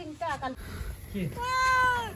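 A domestic cat meowing once, a single drawn-out meow about half a second long that falls slightly in pitch, about a second and a half in.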